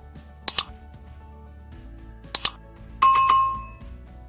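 Subscribe-animation sound effects: two quick double mouse clicks about two seconds apart, then a bright notification-bell ding that rings out for under a second, over soft background music.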